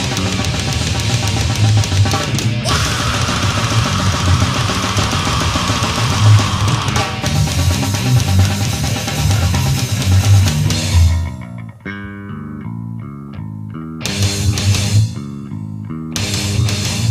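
Studio recording of a brutal death metal band playing flat out: distorted guitars, bass and drums. A little past ten seconds in the drums drop away for about three seconds, leaving a bare riff, before the full band comes back in near the end.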